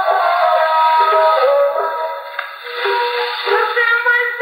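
A woman singing a Kurdish folk song with musical accompaniment. It is an old, poor-quality recording: thin and tinny, with no bass and dull highs. The music briefly drops in loudness a little past the middle.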